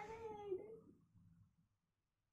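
A child's drawn-out whining cry that fades out within the first second, followed by silence.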